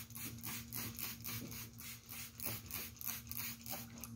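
Plastic trigger spray bottle being pumped rapidly, about four hissing squirts of water mist a second, dampening cloth on an ironing board before it is ironed.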